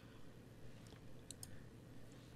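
Near silence with a few faint computer-mouse clicks near the middle.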